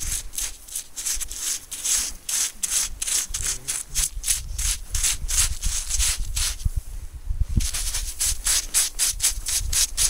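A gloved hand scraping and digging through granular snow close to the microphone, in quick, even strokes of about four or five a second. The strokes stop briefly about seven seconds in, leaving a few low knocks, then resume.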